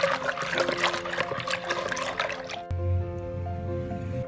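Water sloshing as a hand stirs powdered lime into water in a plastic bucket; the stirring stops about two-thirds of the way through. Soft background music with piano-like notes plays underneath throughout.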